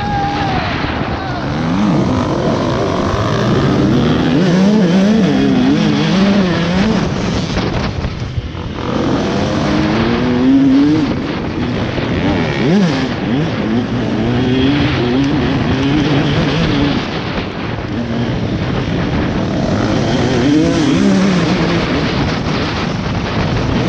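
KTM 150 SX two-stroke dirt bike engine at race pace. It revs up in rising sweeps and drops back again and again through gear changes and corners, with a brief break about eight seconds in.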